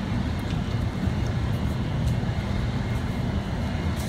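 Steady low background rumble, with a few faint light clicks as the short shifter assembly is handled and turned over.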